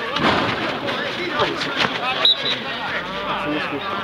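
Men shouting to each other during a football match, one calling a name about halfway through, with several sharp knocks and a short high tone a little past halfway.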